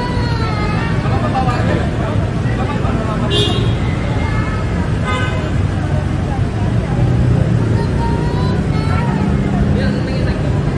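Street traffic and running vehicle engines with a low, steady rumble, under a background babble of voices. Two brief high-pitched sounds cut through, about three and a half and five seconds in.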